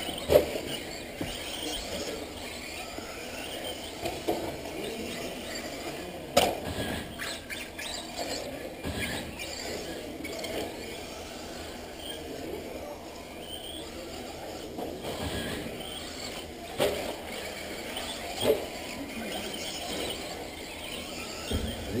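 Radio-controlled off-road race cars running on an indoor clay track: high motor whines rising and falling as they speed up and slow down, with a few sharp knocks, the loudest about six seconds in.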